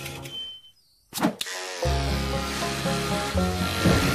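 Music breaks off into a moment of silence, a sharp clack follows, and then electric sheep shears start buzzing steadily under low music as the lamb is sheared.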